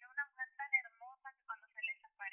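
A person's voice in quick, unclear syllables, thin and tinny as if through a phone's speaker.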